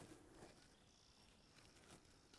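Near silence, with only a faint background hiss.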